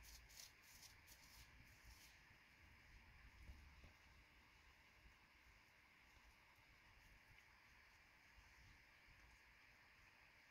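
Near silence: faint room tone, with a few soft ticks in the first two seconds and one more a little after the third second.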